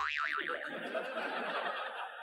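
A cartoon-style 'boing' sound effect. Its pitch wobbles quickly up and down for about half a second, then it trails off into a fainter noisy tail.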